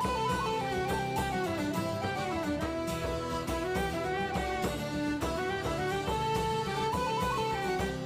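Instrumental background music: a melody that steps up and down over a steady beat.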